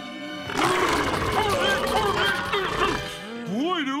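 A crowd of cartoon Krabby Patty zombie monsters growling and roaring together over background music, starting about half a second in. Near the end a single voice swoops up and down in pitch.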